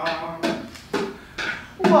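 Drum struck four times at a steady beat of about two strikes a second.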